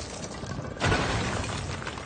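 Cartoon sound effect of rock cracking and shattering: a crackling, then a sudden loud crash a little under a second in that trails off.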